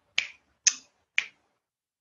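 Three finger snaps about half a second apart, the kind made while searching for a word.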